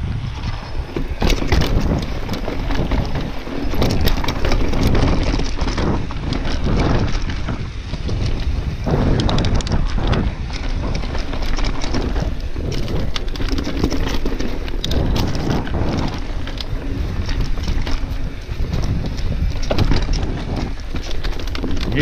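Mountain bike riding fast over rock and dirt single track, with tyres rolling and the bike clattering over bumps in many sharp knocks and rattles, under steady wind noise on the microphone.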